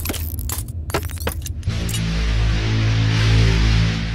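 Logo intro sting of music and sound effects: a quick run of sharp clicks and hits for about the first second and a half, then a loud sustained low chord with a bright hiss over it.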